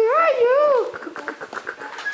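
A toddler's high-pitched babbling vocalisation that rises and falls twice, ending about a second in, followed by light scattered taps of small footsteps on a hard floor.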